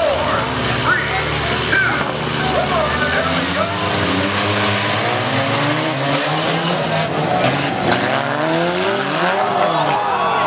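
Several demolition-derby stock cars' engines revving hard as the heat gets under way, their pitch climbing and dropping over one another, with a few sharp knocks of cars hitting about seven to eight seconds in.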